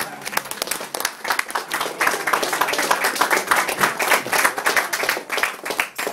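A small group of people clapping by hand, dense and irregular and fullest in the middle, with voices mixed in, as the song ends.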